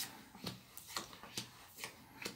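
Tarot cards being handled and drawn from the deck: a faint series of about six brief clicks and rustles.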